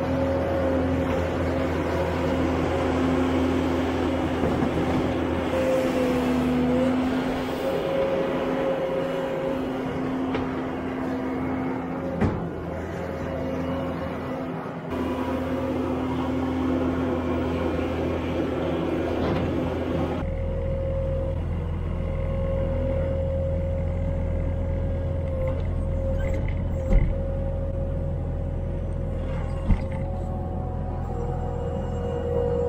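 Bobcat skid-steer loader's diesel engine running steadily under working load with a steady whine, while it carries and dumps buckets of manure, with a couple of sharp knocks. About two-thirds of the way through the sound turns deeper and more muffled, as heard from inside the loader's cab.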